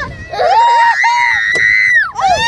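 High-pitched children's screams on a spinning fairground ride, with two voices overlapping. They start about half a second in and hold for over a second.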